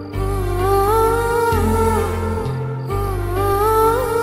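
Soft romantic background music: a slow, gliding wordless melody, hummed, over low held notes that change about once a second.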